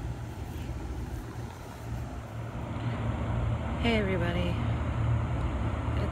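Steady low outdoor rumble, with a brief voice about four seconds in.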